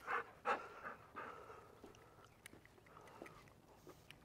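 Golden retriever panting faintly, a few quick breaths in the first second, then fading to near quiet.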